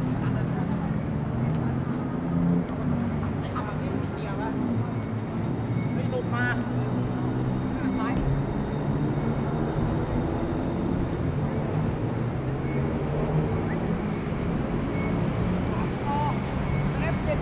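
Steady urban outdoor ambience: a continuous traffic rumble with indistinct voices of passers-by, and a few brief high chirps about halfway through.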